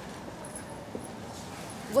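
Steady, even background noise between lines of dialogue, the room tone of an indoor set, with no distinct event.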